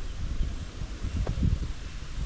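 Wind on the microphone: an uneven low rumble with faint rustling over it.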